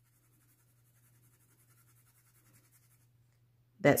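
Black colored pencil with a soft core shaded lightly across cardstock: faint, quick back-and-forth scratching strokes that stop about three seconds in.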